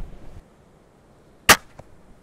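An 850-pound steel-prod windlass crossbow loosing a 60-gram needle bodkin bolt: a single sharp, loud crack of the string and prod slamming forward about a second and a half in, followed by a much fainter knock a third of a second later.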